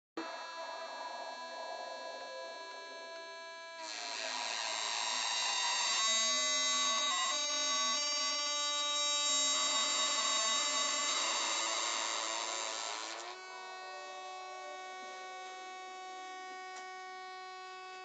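Sustained electronic synthesizer drone of steady, buzzy tones. It grows louder and brighter about four seconds in, shifts pitch around six seconds, and settles into a thinner, steady higher tone about thirteen seconds in.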